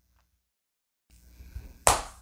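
About a second of dead silence where the video is spliced, then faint room noise with a few small ticks, and one short, sharp click-like sound near the end.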